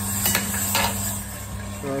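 Small drum coffee sample roaster running mid-roast, its motor giving a steady hum, with a few light clicks in the first second. The roast is about three to four minutes in, in the drying stage just before the beans begin to change colour.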